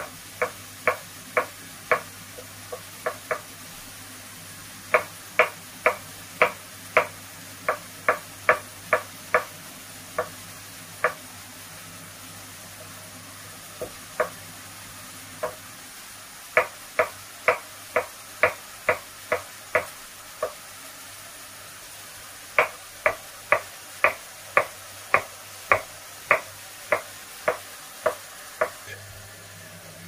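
A kitchen knife slicing button mushrooms against a wooden cutting board. Each cut lands as a sharp knock, in runs of about two a second with short pauses between the runs.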